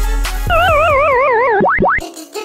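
A hip-hop beat cuts out, and a cartoon-style sound effect takes over: a warbling tone that wobbles about four times a second as it slides down, then two quick rising whoops near the end.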